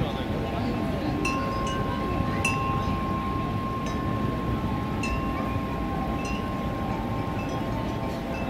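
Metal chimes ringing: a few bright struck notes and one steady ringing tone held on. Underneath runs a steady low rush of noise.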